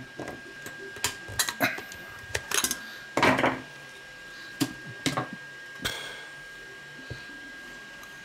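Scattered clicks, taps and a brief scrape from the plastic and metal parts of a disassembled HP 48SX calculator being handled on a silicone work mat, with a longer rustle a little over three seconds in.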